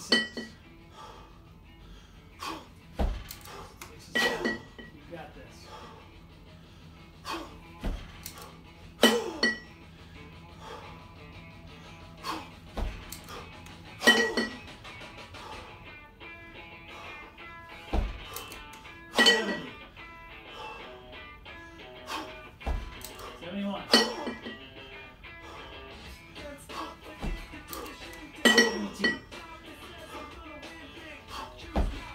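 Two 20 kg competition kettlebells clinking against each other with a brief metallic ring, about once every five seconds as they come together at the chest on each jerk rep. Dull low thumps fall between the clinks, and music plays in the background throughout.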